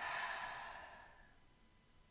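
A woman's long audible out-breath, a sigh that fades away over about a second and a half.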